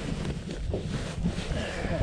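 Low wind rumble on the microphone mixed with clothing fabric brushing and rubbing against the camera, irregular and uneven.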